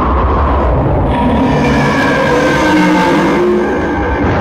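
Dramatic soundtrack: a heavy, continuous low rumble with ominous pitched tones swelling in over it about a second in and fading out near the end.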